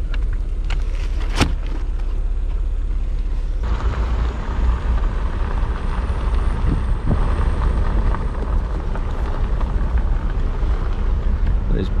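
Wind rumbling on the microphone over a running Jeep Wrangler engine, with one sharp click about a second and a half in. About four seconds in, the sound turns to a louder, steadier hiss and rumble.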